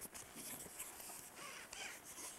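Faint, irregular rustling and light scuffing, as of clothing, a canvas bag and boots shifting on gravelly soil.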